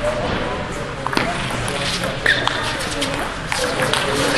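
Table tennis doubles rally: the ball clicking sharply off paddles and table a handful of times, about a second apart, over a murmur of voices in a large hall.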